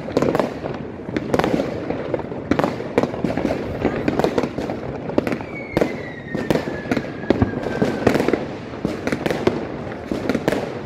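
Fireworks and firecrackers going off all around in a dense, unbroken run of sharp bangs and crackling. About halfway through, a long whistle sounds for about three seconds, falling slowly in pitch.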